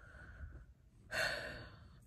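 A woman's breath: a faint intake, then a long audible sigh out starting about a second in and fading away.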